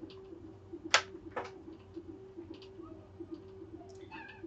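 Two sharp clicks about a second in, half a second apart, with a few fainter ticks over a faint steady hum.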